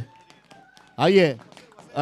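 Speech only: a man briefly calls out “aaiye” (come), with a low background before and after it.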